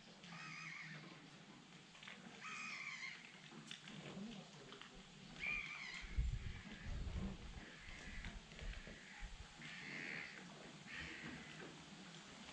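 Repeated short, harsh bird calls, about six of them spaced roughly two seconds apart, with a brief low rumble about six seconds in.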